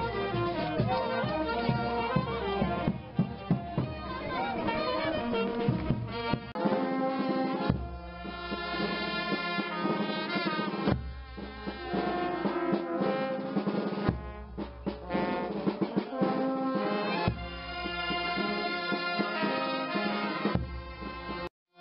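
Brass band music: trumpets and trombones playing a melody. The first few seconds are busier with beats under the tune, after which the notes are held in long phrases separated by short breaks.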